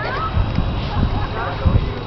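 Young children's voices in the background, short and high-pitched, with a few light knocks, the loudest near the end.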